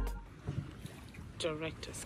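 Faint outdoor ambience with wind and lapping water, broken about one and a half seconds in by a short call from a person's voice.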